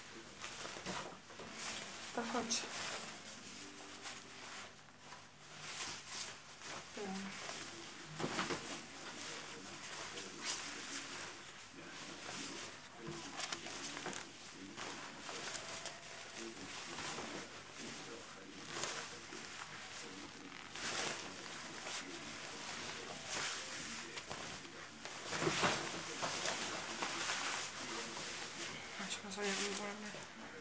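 A jacket's fabric rustling and swishing in irregular bouts as it is pulled on and adjusted, with faint voices in the background.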